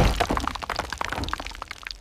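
A long bone smashed down on a stone slab and shattering: a heavy crack at the start, then a dense splintering crackle of fragments that fades over about a second and a half.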